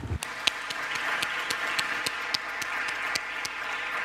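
Audience applauding; the clapping sets in suddenly and keeps up evenly.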